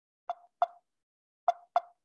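Computer mouse clicking: four short, sharp clicks in two quick pairs, about a second apart.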